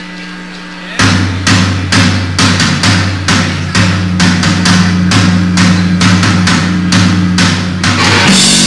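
A live rock band launches into a song on a loud, distorted amateur recording: drum kit hits about two to three times a second over a low, sustained droning note, starting suddenly about a second in. Before that comes a steady electric hum.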